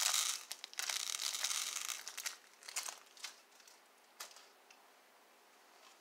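Clear plastic bag crinkling as it is handled, dense for about two seconds, then a few scattered crackles that die away about four seconds in.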